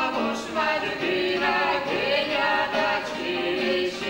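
Mixed ensemble of women's and men's voices singing a Georgian polyphonic folk song in several parts, holding chords and sliding between notes.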